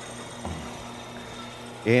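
A low steady mechanical hum with a faint knock about half a second in.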